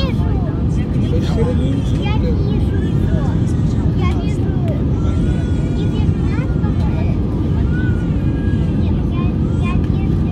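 Steady low cabin noise of an Airbus A320 on approach, engines and airflow heard from inside the passenger cabin, with passengers talking indistinctly over it.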